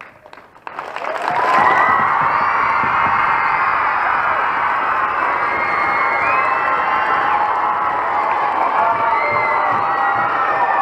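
A large crowd of middle-school children breaks into cheering about a second in and keeps it up loudly, many high voices shouting and whooping over clapping.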